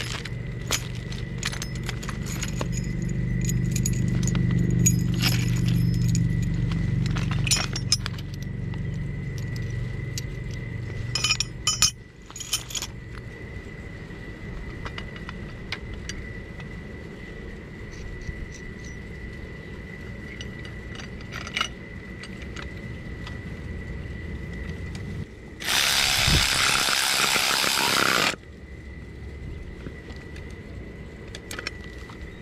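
Metal parts of a trailer jack clink and a plastic hardware bag crinkles as the jack is put together by hand, in scattered clicks. A low, steady-pitched droning hum swells and then stops about twelve seconds in. A loud hissing rush lasts about three seconds near the end.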